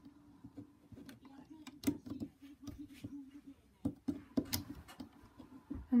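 Rubber bands being stretched and hooked onto the plastic pegs of a Rainbow Loom by hand, making light, irregular clicks and taps.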